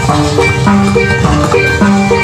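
Live rock band playing an instrumental passage: a riff of short, rapidly repeated pitched notes over drums and bass.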